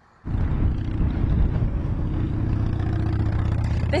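Steady low rumble of road traffic, starting abruptly a moment in and holding an even level.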